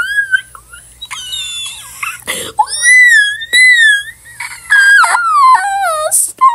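A girl's high-pitched screaming and squealing: a run of shrill, wavering cries broken by short gaps, ending in a long wail that falls in pitch.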